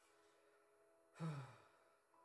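A person sighs once about a second in: a short voiced exhale that falls in pitch.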